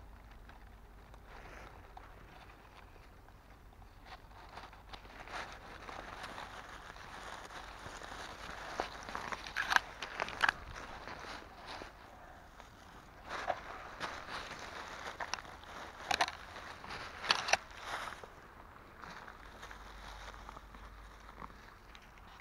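Dry fallen leaves and grass on the forest floor rustling and crackling under a gloved hand. Sharp little crackles and snaps come in clusters from about halfway through.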